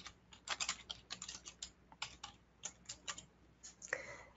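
Typing on a computer keyboard: a faint run of irregular keystrokes as a short name is entered.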